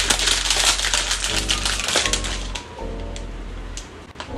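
An egg omelette sizzling in butter in a nonstick frying pan, a busy crackling hiss that is loudest for the first couple of seconds and then dies down. Background music plays underneath.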